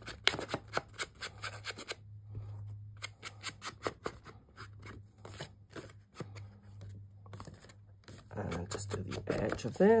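Ink blending tool dabbed and rubbed along the edges of a paper card with black Distress ink: an irregular run of short taps and scratchy strokes, several a second. About a second before the end it is pressed back onto the ink pad.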